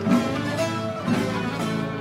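Instrumental music led by a plucked string instrument playing a melody, with new notes struck about every half second.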